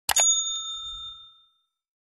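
Two quick clicks, then a bright bell ding that rings out and fades over about a second and a half: the click-and-notification-bell sound effect of a subscribe-button animation.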